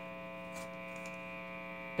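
Steady mains hum and buzz from a Fender guitar combo amp left on with a Fender Esquire plugged straight in, no notes being played.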